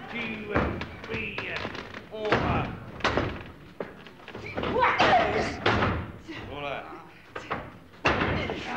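Wrestlers' bodies thudding onto the wrestling ring's canvas several times during a bout, amid shouts from the crowd.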